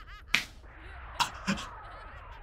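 Cartoon-style sound effects from an anime fight scene: a quick run of short rising chirps, a sharp whip-like crack, two more short snaps, then slow falling glides.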